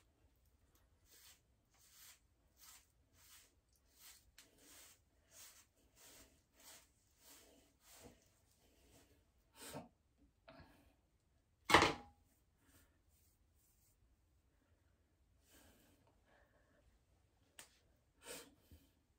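A bristle hairbrush swept repeatedly through natural hair, a dozen or so brisk strokes at about one and a half a second. A couple of seconds after the strokes stop comes one loud, sharp knock, the loudest sound here.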